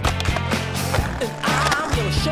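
Skateboard sounds of wheels rolling and the board hitting concrete, under a music soundtrack with a steady beat and a bassline.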